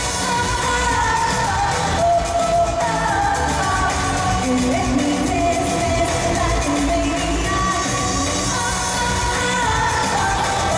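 Up-tempo dance-pop song with a woman singing lead over a steady beat and bass, played through a large hall's sound system.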